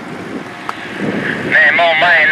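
Paramotor engine and propeller droning overhead, getting much louder about one and a half seconds in, with a wavering pitch.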